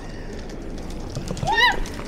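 A passer-by's short, high startled shriek about one and a half seconds in, rising then falling in pitch, at being jumped at by a man hidden in a bush disguise. Underneath is the low murmur of a busy pedestrian street.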